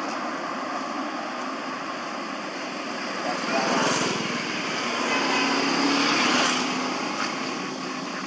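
Outdoor road noise: a motor vehicle passes, rising and fading over a few seconds in the middle.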